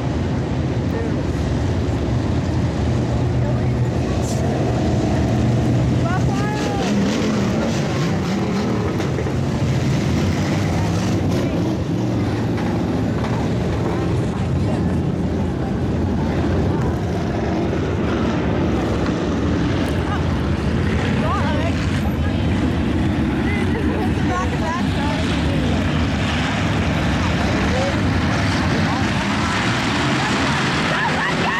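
Several hobby stock race cars' engines running steadily as the pack circles a dirt oval, with spectators' voices chattering nearby.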